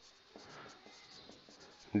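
Marker pen writing on a whiteboard: faint, short scratchy strokes as a small word is written.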